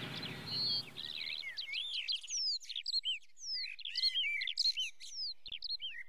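Closing theme music fading out, then songbirds chirping and singing in a run of quick whistled notes that sweep up and down in pitch.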